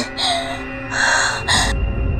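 A woman gasping twice in fright, sharp and breathy, over soft dramatic background music. A deep low music drone swells in near the end.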